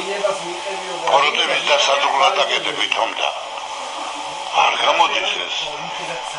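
Speech: a voice talking in two stretches with a quieter pause between them, sounding somewhat like a radio.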